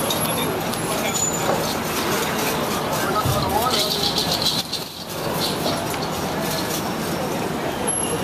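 Busy city street ambience: indistinct voices of passers-by over steady traffic noise.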